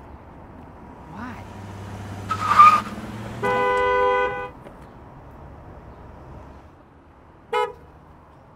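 A loud slap on a car's hood, then the SUV's horn honks once, steady for about a second.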